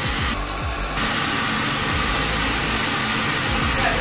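Steady rushing, blowing noise of smoke being blown into a fire-training room, with a brief louder hiss about half a second in.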